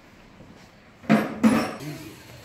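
Two sharp metallic clinks about a second in, a third of a second apart, hard metal objects knocking together.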